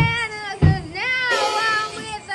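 A boy's voice singing or wailing without words, high and sliding up and down in pitch, with two dull thumps, one at the start and one just over half a second in.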